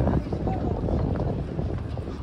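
Wind buffeting the microphone in a steady low rumble, with background voices of people talking.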